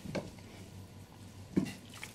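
Quiet room with two brief soft handling noises, about a fifth of a second in and near the end, as a gloved hand moves a paper notepad.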